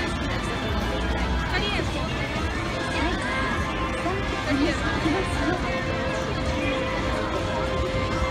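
Busy street-crossing ambience: chatter from a waiting crowd over a steady traffic rumble, with music playing in the background.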